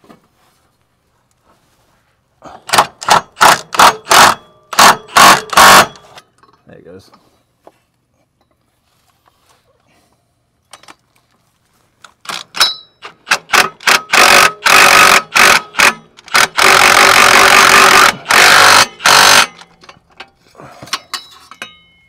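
Cordless power tool on a long socket extension running the downpipe flange nuts on. It goes in several short trigger bursts between about 3 and 6 seconds in, then in a longer, louder run from about 12 seconds that holds steady before it stops about a second and a half before the end. This is the passenger-side downpipe being fastened after its nuts were started by hand.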